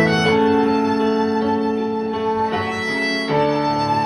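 Violin played slowly, with long held notes that change only a few times, over lower held notes beneath it.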